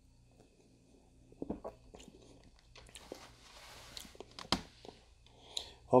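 A person sipping beer from a glass: quiet mouth clicks and lip smacks, a soft hissing slurp in the middle, and a sharp click as the sip ends.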